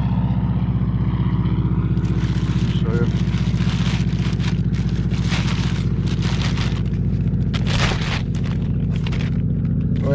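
A steady low motor hum, with plastic bag rustling and crinkling laid over it from about two seconds in.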